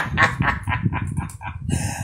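A man's rapid cackling laugh: a fast, even run of short bursts, about eight a second, that thins out near the end.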